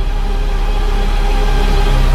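Cinematic intro soundtrack: a heavy low rumbling drone with held tones over it, slowly swelling as it builds toward a hit.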